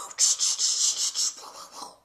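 A woman's mouth-made sound effect: a run of breathy hissing noises that pulse several times and fade out near the end, made while acting out play with action figures.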